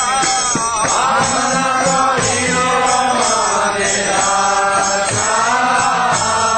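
Devotional chanting (kirtan): voices singing a mantra melody over steady jingling percussion.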